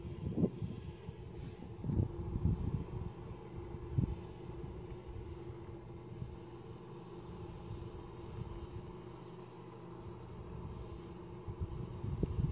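A steady low mechanical hum, with a few low thumps in the first four seconds.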